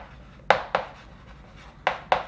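Chalk tapping and scraping on a chalkboard as words are written by hand: about three sharp taps, two close together near the middle and one near the end.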